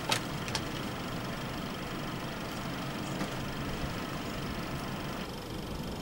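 Steady low background hum and hiss with no clear pitch, with two faint clicks in the first half-second.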